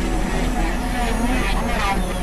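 Dense, layered experimental electronic noise music from synthesizers: wavering, bending pitched tones over a constant low hum, at a steady loud level.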